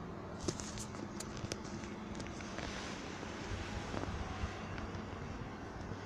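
Steady low background hum with a few light, sharp clicks in the first two seconds.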